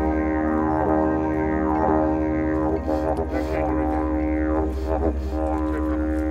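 Didgeridoo played as background music: a low, steady drone with a fast rhythmic pulse underneath and sweeping rises and falls in tone about once a second.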